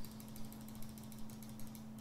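Faint, irregular clicks over a steady low hum.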